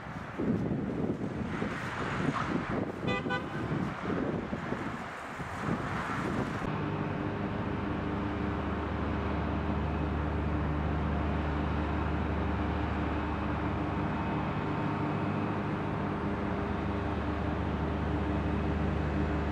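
Wind and traffic noise with a short horn toot about three seconds in. From about seven seconds on, a steady low engine hum takes over.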